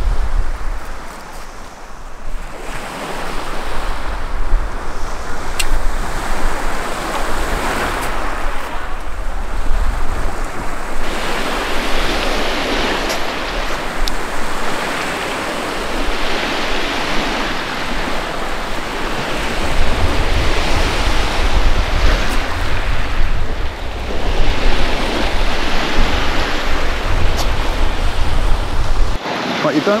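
Small waves breaking on a shingle beach, swelling and washing back every few seconds. A steady low rumble of wind on the microphone runs underneath.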